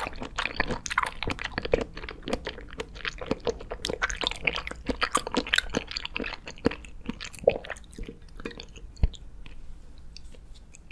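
Close-miked mouth chewing soft jelly: a dense run of wet, squelching and clicking chews that thins out near the end, with a single sharp click about nine seconds in.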